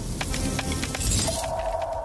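Title-card music sting: a dense rush of quick clicks and crackles over a low bass, then a single held tone that comes in just over a second in and slowly fades.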